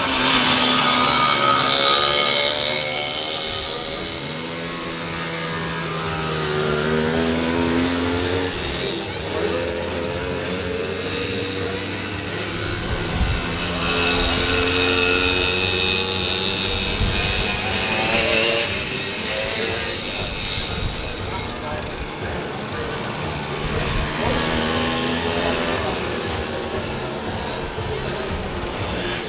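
Engines of small racing motorbikes revving up and down as they race round a grass track, their pitch rising and falling over several seconds at a time as the riders accelerate, lift off and pass.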